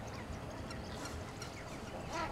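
A flock of flamingos calling: a steady chorus of many faint overlapping calls.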